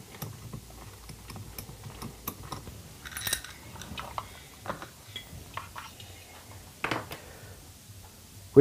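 Faint, scattered metallic clicks and taps from tools and screws as the three screws are undone and the pull-start cover is taken off an IAME Gazelle kart engine.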